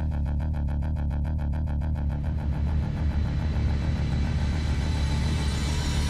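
Dramatic suspense background music: a low synth drone under a fast, evenly ticking pulse, holding steady with no resolution.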